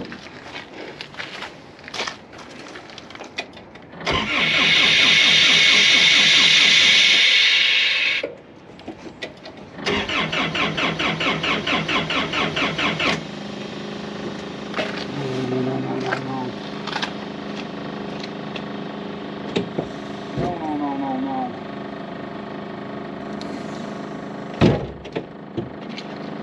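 Diesel engine of a towable air compressor cranked by its starter with a rapid even pulsing, catching about thirteen seconds in and settling into a steady idle, after a loose plug in the engine bay had been wiggled back into place. A loud harsh noise of about four seconds comes a few seconds earlier, and a single sharp knock comes near the end.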